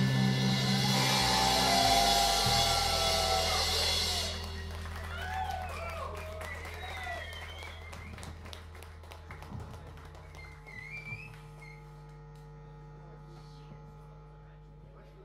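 A rock trio's last chord ringing out: distorted electric guitar, bass and cymbals sustain loudly, the cymbal wash stops about four seconds in, and the amplified notes then fade slowly to a low hum.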